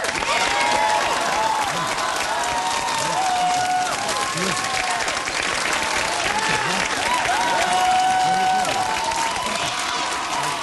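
Studio audience applauding and cheering, with shouts and whoops rising and falling over the steady clapping.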